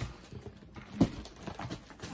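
Packing noises: a cardboard box and tissue paper being handled, with scattered light knocks and rustles and one sharper knock about a second in.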